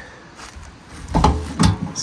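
A metal storage compartment door on a camping trailer being unlatched and swung open, with a few sharp clunks about a second in.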